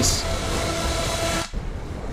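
AI-generated cinematic soundtrack for an explosion in a ruined city: a dense rushing rumble with a few faint steady tones underneath. It cuts off suddenly about one and a half seconds in and continues much quieter.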